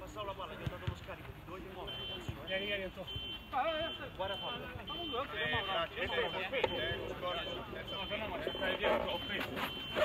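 Men's voices calling and shouting on the pitch. From about two seconds in, a high electronic beep repeats steadily, a little under twice a second.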